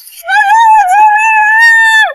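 A woman's long, loud scream, high and wavering in pitch, that drops away at the end.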